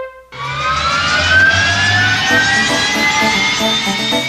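Radio jingle sound effect: after a brief gap, a long rising whoosh with pitch climbing slowly over about three seconds, with bass music notes underneath.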